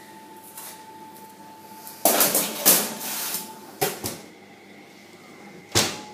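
Oven door and metal baking tray being handled: a scraping rattle as the tray is slid out over the oven rack about two seconds in, a couple of clicks, then a sharp knock just before the end.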